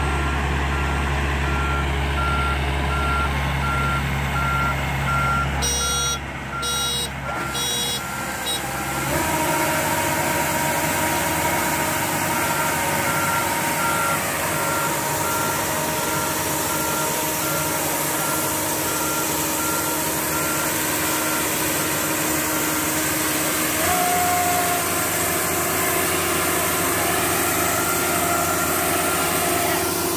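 World corn combine harvester's 102 HP engine running steadily, with an electronic beeper sounding about twice a second for much of the time. About nine seconds in, new steady machine tones join as the grain unloading auger starts, and it runs on as shelled corn pours out of the spout.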